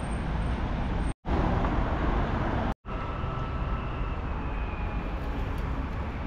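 Road traffic on a city street: a steady rush of passing cars, cut twice by a brief moment of total silence, about a second in and near the three-second mark.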